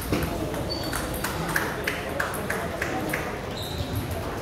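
Table tennis rally: the ball clicking off the bats and pinging off the table, about a half-dozen hits roughly a third of a second apart, stopping after about three seconds, over the chatter of a busy hall.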